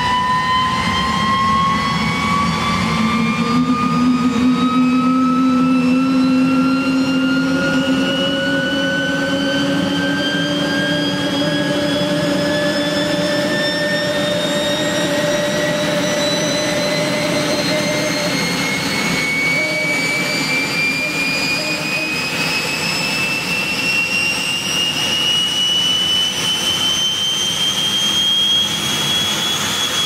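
Turbomeca Turmo helicopter turboshaft engine running with a loud whine that rises steadily in pitch instead of settling at idle, the slow runaway acceleration of a governor that is not working. Near the end the whine turns and begins to fall.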